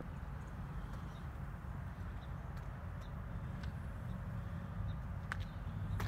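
Quiet outdoor background: a steady low hum with a few soft, scattered clicks.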